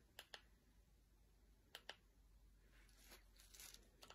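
Near silence broken by faint, sharp clicks in two pairs, one pair near the start and another a second and a half later: button presses on a ring light's remote, changing the light mode.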